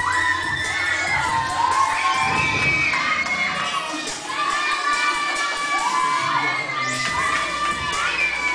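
A crowd of children shouting and cheering, many high-pitched voices overlapping without a break.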